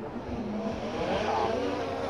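Small quadcopter drone's propellers spinning up for takeoff: a buzzing whine over a hiss, rising in pitch about a second in.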